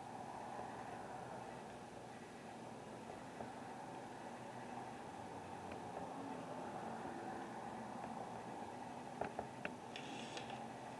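Faint, steady room tone, a low hum and hiss, with a few faint short clicks near the end.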